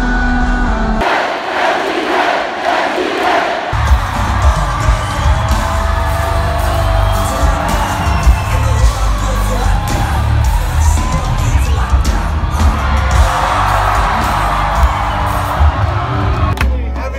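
Live concert music heard from within the crowd, loud with heavy bass, over a crowd cheering and singing along. About a second in the bass drops out, and it comes back a few seconds later.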